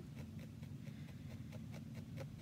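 Felting needle punching repeatedly through wool roving into a foam pad, heard as faint, irregular soft ticks over a low steady room hum.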